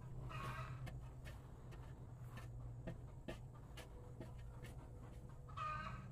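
Two short chicken calls, one near the start and one near the end, over a shovel scraping and striking into dirt in scattered short clicks, with a steady low hum underneath.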